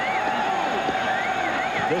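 Stadium crowd noise heard through an old TV broadcast, with a steady hum and a warbling high tone starting about a second in.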